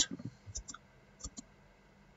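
A few faint computer keyboard clicks, in two quick pairs.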